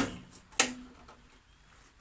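A single sharp metallic clack about half a second in, with a brief ring that dies away within a second, as the sheet-metal belt cover on the end of the Sealey SM27 lathe's headstock is shut.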